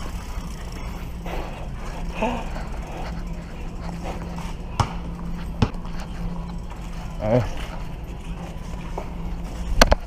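A bicycle rolling along a smooth store floor, a steady low hum with a few sharp rattling clicks from the bike. There are loud knocks near the end.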